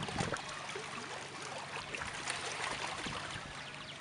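Small waves lapping at a rocky lakeshore: a steady wash of water with many irregular little splashes and clicks.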